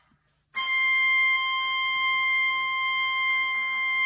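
Sheng (Chinese free-reed mouth organ) sounding a held chord that starts about half a second in and is sustained steadily.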